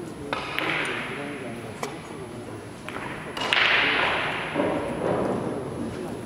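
Carom billiard shot: a sharp click about a third of a second in as the cue strikes the cue ball, then lighter clicks and a louder clack about three and a half seconds in as the balls strike each other, each ringing out in a large hall. Voices murmur in the background.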